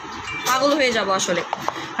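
A few sharp clicks and knocks, about a second in and a little after, from a plastic cream jar being handled right against the phone, with quieter speech under them.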